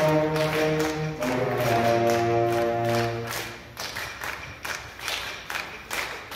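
School concert band playing held wind chords. A little past three seconds in, the winds drop away and the music goes quieter, with light percussion taps.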